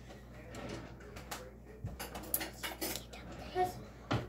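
Light clinking and clattering of dishes and utensils being handled on a kitchen counter, a quick run of sharp clicks through the middle seconds.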